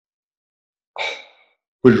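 A man's short sigh, a single audible breath out, about a second in, after a second of silence; speech begins near the end.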